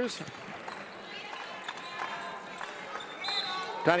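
Basketball being dribbled on a hardwood court over the hum of an arena, with short high squeaks, typical of sneakers on the floor, from about a second in.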